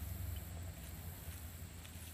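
Quiet outdoor background with a low, steady rumble.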